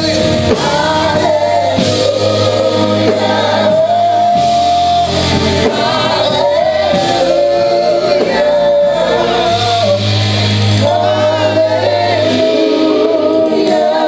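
Gospel praise singing: a small group of singers on microphones, with keyboard accompaniment, holding long sustained notes over a steady bass line.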